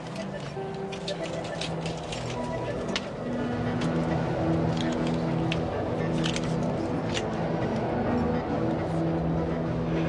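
Dramatic film score of held low notes over a steady airliner rumble that grows louder about three seconds in, with scattered light clicks.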